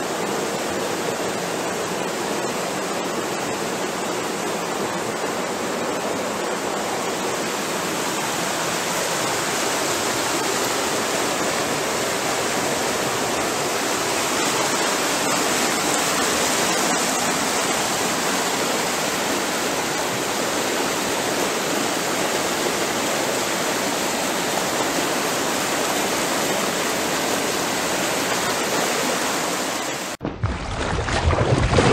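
River rapids: whitewater rushing over boulders and bedrock close by, a steady, loud rush of water.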